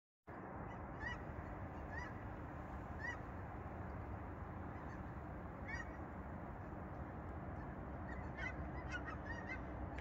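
A large flock of geese calling high overhead: short, faint honks about once a second at first, then a quicker run of calls near the end, over steady background noise.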